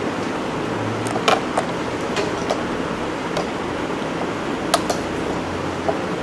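Steady room noise, with a few sharp clicks and knocks scattered through it.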